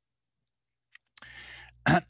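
Dead silence for about the first second, then a single faint click from a computer as the slide is advanced. A short, faint hiss follows, and the voice cuts back in sharply near the end.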